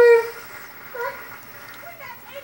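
Short high-pitched vocal sounds in a playful voice: one held briefly right at the start and a quick one about a second in, with low room tone between.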